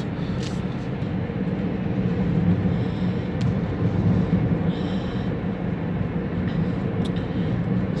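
A car's engine and tyre road noise while driving at steady speed, heard from inside the cabin as an even rumble with a low hum.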